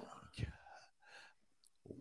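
Near silence on the commentary track, with one brief, faint vocal sound from a host about half a second in, like a whisper or breath.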